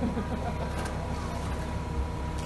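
Mobile crane's diesel engine running steadily: a low drone with a thin steady tone above it.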